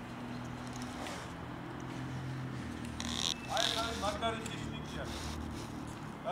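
Steady low hum of distant city traffic, with a man's short spoken call about halfway through.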